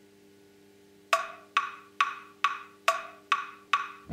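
Count-in on a play-along backing track: about seven sharp, wood-block-like clicks at a steady tempo, a little over two a second, starting about a second in and marking the beats before the band comes in.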